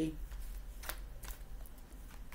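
A deck of tarot cards being handled and shuffled in the hands: a few scattered, soft card clicks and flicks.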